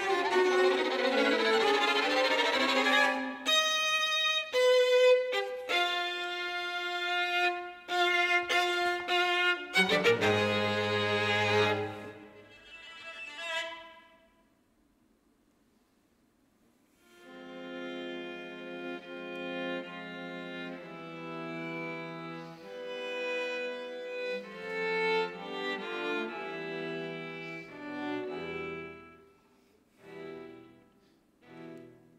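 String quartet of two violins, viola and cello playing live. A loud, dense passage gives way to short detached chords and a loud low note. The music breaks off into silence about fourteen seconds in, then resumes more quietly with held chords.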